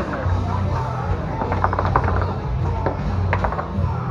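Foosball play: a rapid rattle of clicks as the ball is struck by the plastic men and the rods knock, about one and a half seconds in, and a second short burst a little past three seconds. Background music with a steady bass runs underneath.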